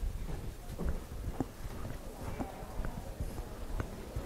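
Footsteps on a hardwood floor, about two steps a second.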